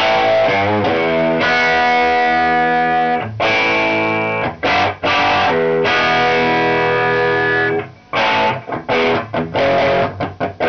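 Electric guitar (Epiphone Les Paul Ultra with Granville humbuckers) played loud through a 1974 Marshall Super Bass valve head modded to Super Lead specs, channels jumpered, with the treble almost off, giving a crunchy overdriven tone. Short choppy chord stabs open, then several long ringing chords, then quick stabs again near the end.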